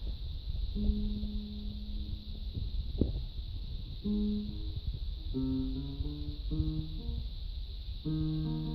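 Electronic keyboard played by hand: one held note, a pause, then a few more notes that pick up into a quicker run of notes and chords in the second half.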